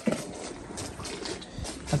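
Horses wading in a shallow stream: light, irregular sloshing and splashing of water around their legs, with small scattered clicks.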